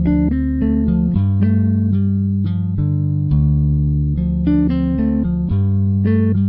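Background instrumental music: plucked guitar notes over low bass notes that change every second or two.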